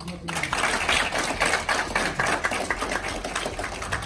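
Audience applauding: a dense patter of hand-claps that starts about a third of a second in and carries on steadily.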